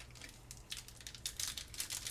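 Foil wrapper of a Magic: The Gathering collector booster pack crinkling in a rapid run of sharp crackles as it is handled and pinched open at the top seam.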